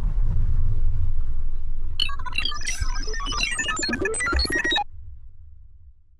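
Synthesised logo sting: a deep rumble swells in, a flurry of bright chiming tones comes in about two seconds in and cuts off suddenly near five seconds, and the low rumble fades away.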